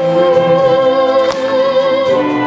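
A girl's voice singing enka into a microphone, holding one long note with vibrato over a wind band's sustained chords, with a single percussion stroke a little past the middle.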